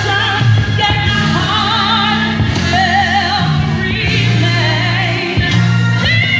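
Live band music with a singer holding long notes with a wavering vibrato over a strong bass line that moves to a new note about once a second.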